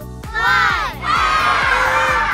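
A group of children shouting the last number of a countdown, then breaking into a long cheer about a second in, over upbeat background music.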